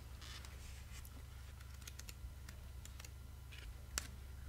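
Faint, irregular light clicks and taps, about a dozen, with one sharper click near the end, over a low steady hum.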